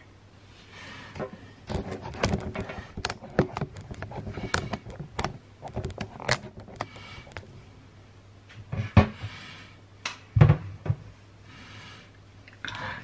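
Handling noise: a quick run of clicks and knocks for several seconds, then two heavier thumps near the end.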